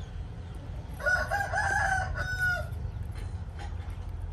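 A rooster crowing once: a wavering call of about a second and a half ending in a short held note, over a steady low rumble.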